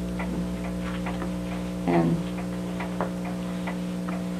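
A mechanical wall clock ticking steadily, several ticks a second, over a constant low electrical hum.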